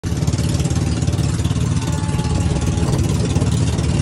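Engine of a motorized outrigger boat (bangka) running steadily under way, a loud, low, even drone, with rushing wind and water noise over it.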